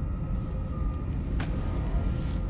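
Low steady rumble of a starship bridge's background hum, with a faint steady tone over it. A brief soft click or rustle comes about one and a half seconds in.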